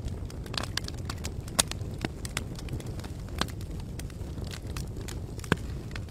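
Fire crackling: a steady low rumble with irregular sharp pops and snaps.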